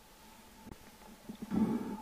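Water sloshing and gurgling around a camera held at the waterline, muffled and low-pitched. The loudest slosh comes about a second and a half in, with a few smaller ones before it, over a faint steady hum.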